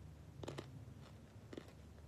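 A person biting and chewing dark chocolate with nuts: faint crunches, two close together about half a second in and one more about a second and a half in, over a low steady hum.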